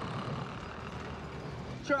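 A car running steadily on the road, with a constant low engine and road rumble.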